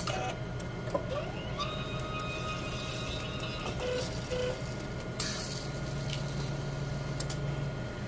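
Siemens Sysmex CS-2500 blood coagulation analyzer running its mechanism: motors whir and whine in short runs as the probe arms and reagent turntable move, with scattered clicks over a steady hum.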